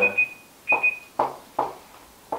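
A high electronic beep sounding in short, rapid pulses at the start and again just under a second in, followed by a few brief soft sounds.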